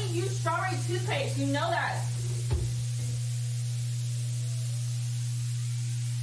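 A steady low electrical hum, with a person's voice over it for the first two seconds and a single short knock about two and a half seconds in.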